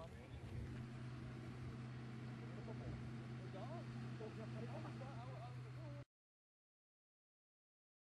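Steady low mechanical hum with faint voices in the background, then the sound cuts off dead about six seconds in as the live broadcast feed drops out.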